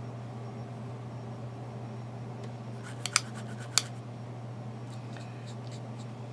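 Light clicks and taps from a makeup brush and eyeshadow palette being handled, a quick cluster about three seconds in and a few fainter ones near the end, over a steady low hum.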